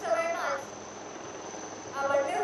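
A commentator's voice briefly at the start, then a steady high-pitched whine over an even hiss.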